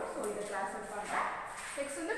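A person's voice speaking, with no other clear sound.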